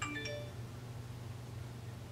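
A brief chime of three quick notes stepping upward at the very start, over a steady low hum.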